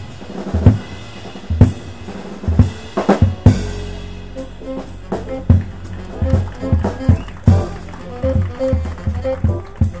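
Jazz drum kit soloing with sharp snare and bass-drum hits, capped by a crash about three and a half seconds in. After it the band comes back in, pitched melodic notes and a plucked upright bass line sounding over the drums.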